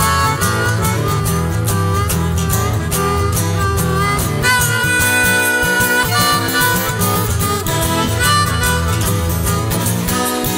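Harmonica playing an instrumental solo in a folk-blues song, over a steady guitar and bass backing with no singing.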